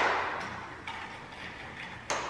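Horizontal window blind being adjusted: a sharp clatter of the slats at the start that dies away, then a few faint clicks from the blind's tilt mechanism.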